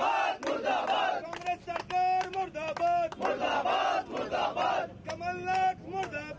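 A group of men shouting protest slogans together in short, repeated phrases of about a second each.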